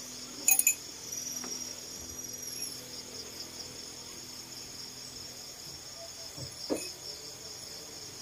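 A steady, high chirring chorus of night insects. Two sharp clicks come about half a second in, and a short knock near the end.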